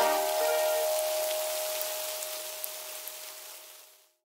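Cartoon rain sound effect, an even hiss of falling rain with a few faint drop ticks, fading out gradually to silence. The last held note of the song's music dies away with it.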